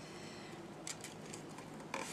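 Faint rustling of a paper sheet being handled and folded in half, with a couple of soft crisp sounds about a second in and near the end.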